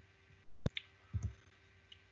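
A single sharp mouse click advances the presentation to the next slide. About half a second later comes a soft, low bump.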